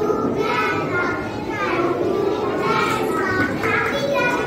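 Young girls' voices, several at once, chattering on stage with no clear words.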